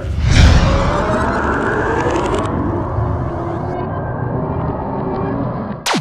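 Cinematic logo sting: a sudden deep boom with a whoosh about a third of a second in, then a long rumbling tail that slowly dies away under faint held tones.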